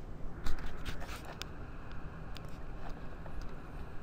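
Clicks and desk handling noise: a cluster of sharp clicks with a brief rustle about half a second in, then a few scattered single clicks. A low steady room rumble runs underneath.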